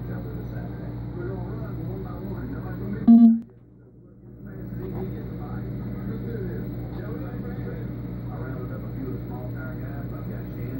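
Aquarium air pump humming steadily while air bubbles through sponge filters. About three seconds in there is a loud knock, and the hum drops away for about a second before it returns.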